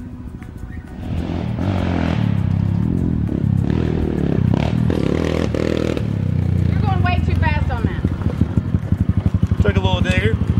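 Small Yamaha dirt bike's single-cylinder engine revving up and down as it is ridden. Near the end it drops to a low, fast, even pulsing as the bike slows beside the camera.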